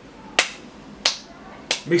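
Three sharp finger snaps in a steady rhythm about two-thirds of a second apart, the first the loudest, keeping time to a bouncy beat.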